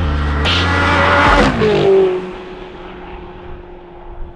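A car driving past, with a rushing whoosh and an engine note falling in pitch as it goes by, over a low electronic music drone that ends about a second and a half in; the sound then fades away.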